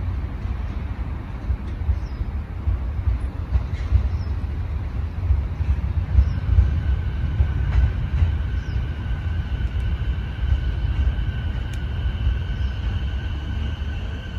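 JR East E233-5000 series electric train creeping slowly into the platform to couple up with another set, a continuous low rumble. A steady high-pitched squeal joins about halfway through and holds as it closes in.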